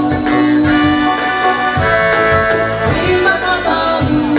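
Live band playing a song in a reggae and Afrobeat style, with a steady drum beat and long held notes.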